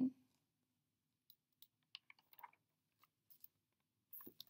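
A few faint clicks and a brief soft paper rustle as a picture book's page is turned, with near silence between them.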